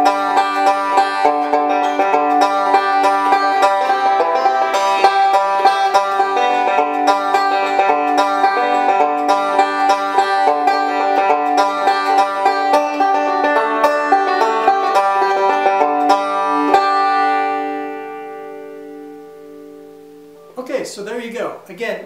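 Five-string banjo playing continuous picking rolls over the chord changes of a tune in G (open G, first-position C and D chords), using only the notes of the chords. About 17 seconds in the picking stops and the last chord rings out and fades. A man's voice comes in near the end.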